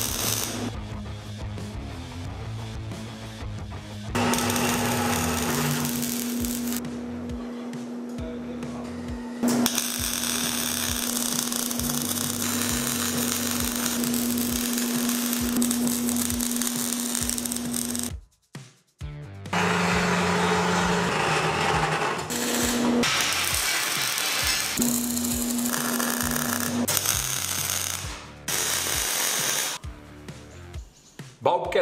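MIG welding arc crackling and sputtering as steel slat-armour frames are welded, heard in several separate runs with a brief near-silent break just past the middle, under background music.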